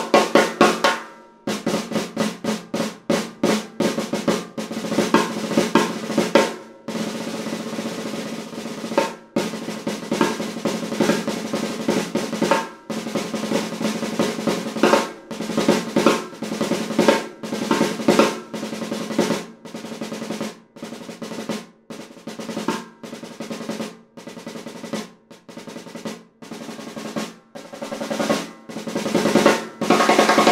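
1920s Ludwig 4x14-inch Dance Model brass-shell snare drum, tuned high, played with sticks: fast rolls and rapid strokes in phrases with short breaks, the head ringing with a steady pitch under the strokes.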